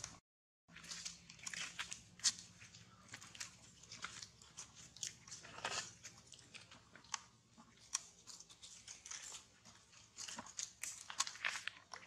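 Dry leaf litter crackling and crunching in irregular sharp clicks, some in quick clusters, starting just under a second in.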